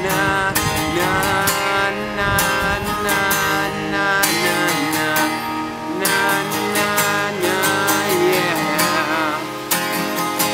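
Acoustic guitar strummed in a steady rhythm, with a man singing over it in drawn-out notes that waver near the end.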